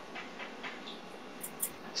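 A pause between sentences: faint room noise with a few small, soft clicks, and two brief sharp ticks about one and a half seconds in.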